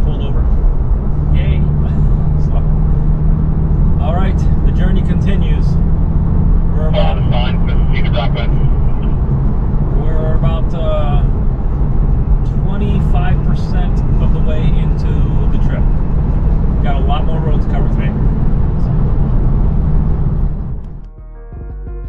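Steady low drone of a Porsche 911 (997) at highway speed heard from inside the cabin, engine and road noise together. The drone cuts off about a second before the end, when music takes over.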